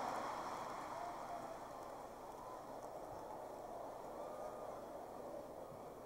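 Large live audience laughing at a punchline, a diffuse crowd sound that slowly dies away.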